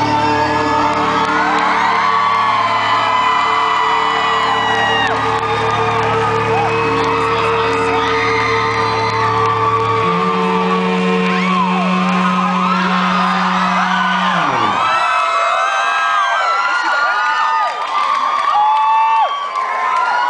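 Live rock band holding the final chords of a song while the crowd whoops and cheers; about two-thirds of the way through, the held notes slide down in pitch and stop, leaving only the crowd cheering and whooping.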